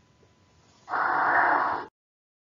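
A person's breath, a loud exhale close to the microphone lasting about a second, starting about a second in and cutting off suddenly.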